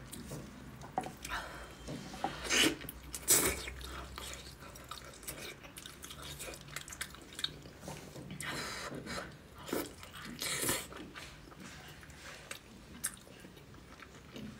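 Close-up chewing and biting of braised pork trotter: irregular wet clicks and bites, with louder ones about two to three and a half seconds in and again near ten to eleven seconds.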